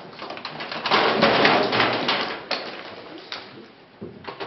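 A heap of rope dropped and pulled about on the floor: a rustling, scraping noise full of small taps. It swells about a second in and dies down toward the end.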